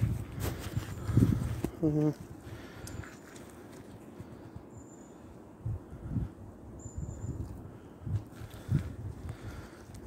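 Footsteps on a wet, rain-soaked woodland path: a few soft, irregular thuds in the second half.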